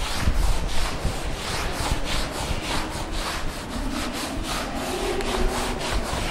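A blackboard duster rubbing chalk off a chalkboard in quick back-and-forth strokes, several a second.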